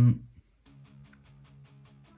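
Quiet background music of plucked guitar notes in an even rhythm over a steady bass line, just after the tail of a man's spoken word.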